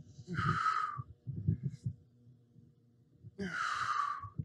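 A man breathing hard from the effort of dumbbell sumo squats: two heavy breaths, each under a second long, about three seconds apart.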